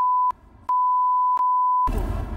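Two broadcast censor bleeps, each a single steady beep tone: a short one ending just after the start, then, after a brief gap, a longer one lasting just over a second. They blank out the school names spoken in the exchange.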